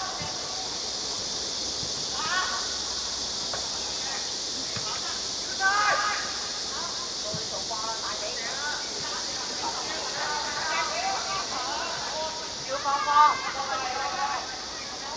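Players and coaches shouting on a football pitch during open play, with a few faint thuds of the ball being kicked, including a corner kick right at the start. A steady high hiss lies under it all, and the loudest shouting comes near the end.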